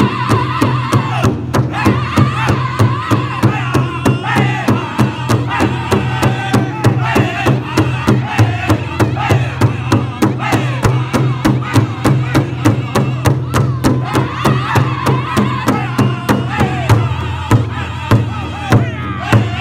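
Powwow drum group singing in high-pitched unison, the voices rising and falling, over a steady beat of several drumsticks striking one large hide drum together, about three beats a second.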